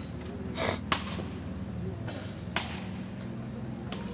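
Drill rifles being handled in exhibition rifle drill: two sharp slaps or clacks of the rifles in the cadets' hands, about a second and a half apart, each with a brief hiss just before it, and a lighter click near the end.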